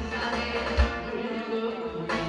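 Trot song backing track played through a hall's PA, with a kick drum hitting twice and then dropping out for the second half.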